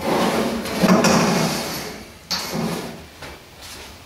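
Rusty steel wheelbarrow being turned over and set down on a wooden workbench: metal scraping and knocking against the bench for about two seconds, then a shorter scrape.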